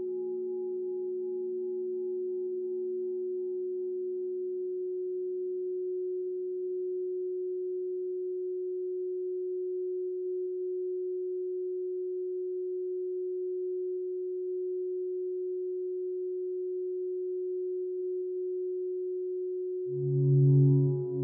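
A steady, unbroken pure electronic tone at one pitch, offered as the 'frequency of gold' for meditation. Fainter tones above and below it fade away over the first several seconds.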